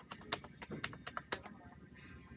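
Computer keyboard being typed on in a quick run of keystrokes that stops about a second and a half in.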